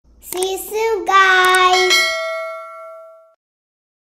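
A child's high voice sings a short wordless phrase over a couple of seconds, with a few clicks. A bell-like ding then rings out and fades away by about three seconds in.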